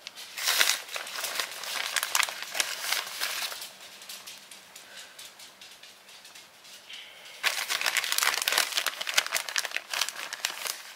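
Plastic bag of shredded cheese crinkling as handfuls are pulled out, in two bouts: the first starts about half a second in, the second near the end, with a quieter stretch between.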